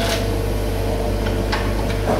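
Komatsu PC75 excavator's diesel engine running steadily under working load as the boom lifts a full bucket of soil toward the truck bed, with a couple of brief ticks.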